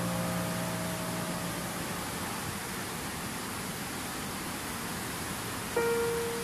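Stream water rushing, a steady even hiss. A held chord of soft background music fades out over the first two seconds, and a new chord enters just before the end.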